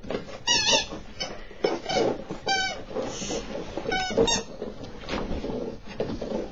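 Chihuahua puppy giving short, high-pitched squeaks several times during rough play, the clearest about half a second in, at the midpoint and twice near the two-thirds mark.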